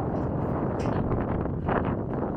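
Wind buffeting the microphone over a steady hum of city street traffic.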